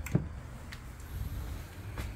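A drawer pushed shut, with a short double click at the start, then a faint low rumble.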